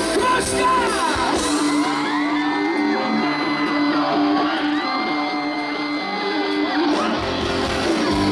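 Live rock band in concert. The drums and bass drop out for a break, leaving a held note with yelling and whoops over it, and the full band comes back in near the end.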